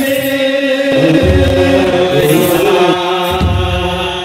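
Ethiopian Orthodox liturgical chant: men's voices chanting in unison over a microphone and PA, with deep beats on a kebero drum about every two seconds.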